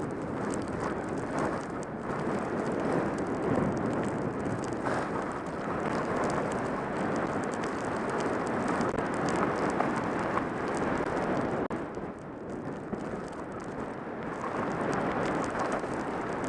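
Skis sliding and carving over fresh snow at speed, a steady rushing hiss with fine crackle, mixed with wind on the helmet camera's microphone. It eases for a couple of seconds past the middle, then builds again.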